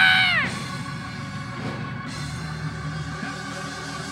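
A preacher's loud held vocal "yeah" into the microphone, falling in pitch and ending about half a second in. It gives way to quieter instrumental church music holding sustained chords.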